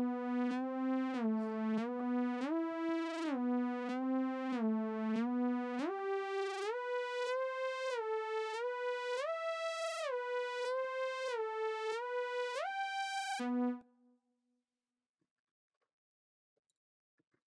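Roland Zenology software synthesizer playing a lead melody on its "Mini Growl" preset. It plays one line of short stepping notes that moves higher about six seconds in, then cuts off suddenly near the end.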